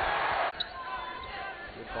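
Basketball game broadcast sound: loud arena crowd noise that cuts off abruptly about half a second in, then quieter court sound with a basketball bouncing on the hardwood, before the commentator's voice comes in near the end.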